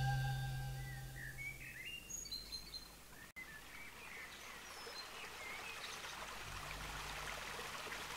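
The last chord of a rock song dies away over the first two seconds. Birds chirp briefly and repeatedly over a faint, steady wash like running water, as a nature-sound intro on the record, and a faint low note comes in near the end.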